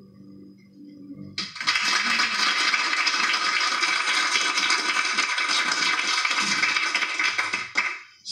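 The last held note of a song fades out, then audience applause starts about a second and a half in. The applause runs as an even clapping noise and cuts off suddenly just before the end.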